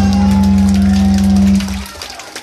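Hardcore punk band's amplified guitars and bass holding a loud final chord, which cuts off about a second and a half in at the end of the song, leaving crowd noise.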